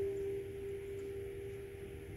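A single grand piano note, struck just before, ringing on and slowly fading, with fainter held tones beneath it.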